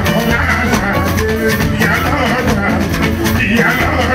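Live band music with a steady bass, drums and shakers, and a man singing into a microphone over it.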